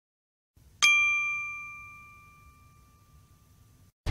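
A single bell-like ding chime sound effect, struck once about a second in and ringing out slowly over about three seconds, marking a section transition.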